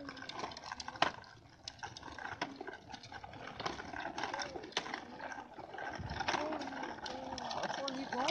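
Small plastic ride-on tricycle rolling over concrete: a gritty rumble with scattered clicks and rattles. A child's voice is heard faintly now and then.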